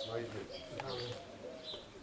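Pigeons cooing in low, repeated phrases, with small birds chirping high above them and a man's short call.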